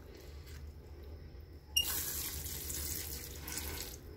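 Water streaming into a pot of freshly repotted potting mix: the first watering after repotting. It starts suddenly a little before halfway with a steady hiss and eases off near the end.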